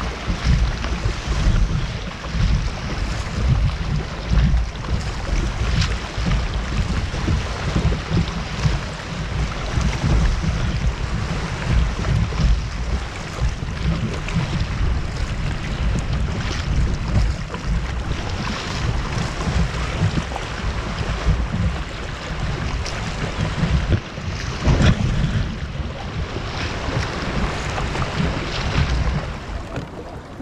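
Wind buffeting the microphone in a heavy, fluttering rumble, over water washing and splashing against a kayak hull as it is paddled out through choppy shallows.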